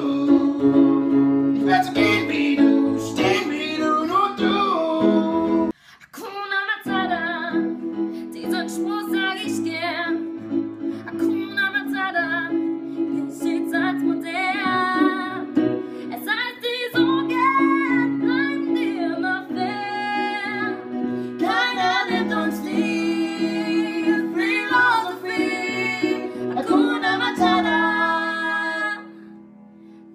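A Disney medley performed at home: a woman singing over keyboard piano chords. The music drops out suddenly and briefly about six seconds in, and thins out near the end.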